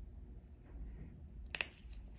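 A sharp double click from a steel hemostat working at the toenail, about one and a half seconds in. Otherwise only a faint low hum.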